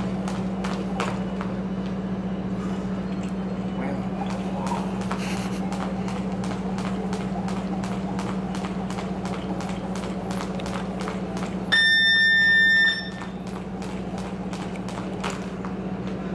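Buddy Lee jump rope slapping a rubber gym floor in a steady, even rhythm of light clicks while a boxer skips, over a constant low hum. About three quarters of the way in, a loud electronic beep sounds for about a second.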